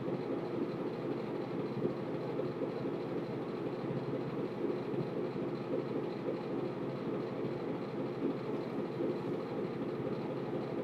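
Steady low background rumble, even in level, with no distinct events.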